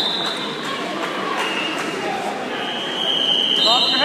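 Many voices talking and calling at once in a large, echoing hall. A steady high-pitched tone comes in about halfway through and holds.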